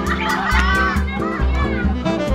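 A crowd of children shouting excitedly over loud background music with a steady bass beat.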